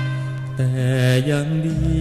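A male voice singing a Thai song over band accompaniment, with held notes that waver and a steady bass line that moves to a new note near the end.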